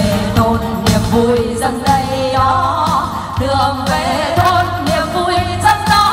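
Two women singing a Vietnamese song as a duet through microphones, their voices amplified over backing music.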